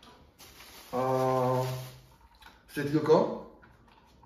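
A man's voice holding a long, flat hesitation sound 'aaa' for about a second, then a brief mumbled word shortly before the end.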